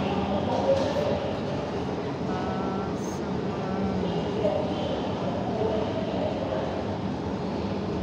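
Busy metro station ambience: a steady rumble of rail and machinery noise under an indistinct hubbub of passengers' voices, heard while riding an escalator.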